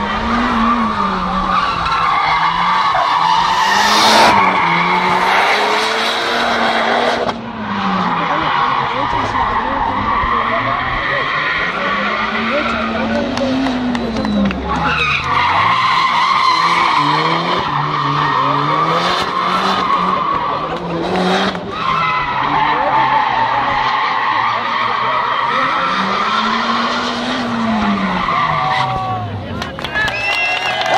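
Mitsubishi Lancer Evolution's turbocharged four-cylinder engine revving up and down over and over as the car's tyres squeal on concrete through tight slalom turns. The squeal runs almost continuously, breaking off briefly a few times between turns.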